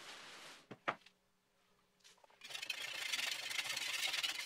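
Faint rustle of plastic sheeting being pulled off, with a single click just before a second in. After a short gap, from about two and a half seconds in, a steady scrape of a metal scraper blade along the edge of cured GFRC concrete.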